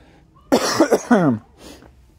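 A man coughing twice in quick succession, two loud, short bursts close together.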